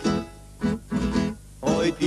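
Tamburica ensemble playing: plucked tamburicas with a double bass in short, clipped chords broken by two brief pauses. A singing voice comes in near the end.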